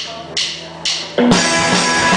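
A rock band's count-in: short sharp ticks from the drum kit about twice a second, then drums, electric guitars and bass guitar come in together all at once a little past a second in and keep playing loudly.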